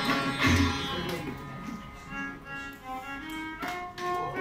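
Sitar and violin playing Indian classical music together with tabla. A deep tabla stroke comes about half a second in, then held notes grow quieter, and a new struck note starts just before the end.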